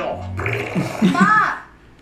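Speech only: short spoken exclamations in Thai, including a woman saying "บ้า" ("crazy").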